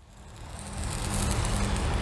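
Industrial site ambience fading in and growing louder: a steady low machinery hum under a broad hiss.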